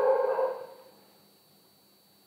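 A man's voice holding one drawn-out vowel that fades out within the first second, followed by near silence.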